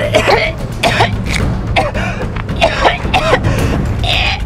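A person coughing in several short fits, with background music underneath.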